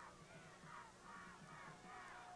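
Faint, distant shouting from players and crowd at the snap of a football play, over a low steady hum.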